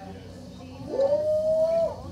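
A single held note that slides up into pitch a little before the one-second mark, is sustained for about a second, and then stops.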